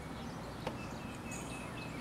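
Faint outdoor ambience with small birds chirping in the background, and a single light click about two-thirds of a second in.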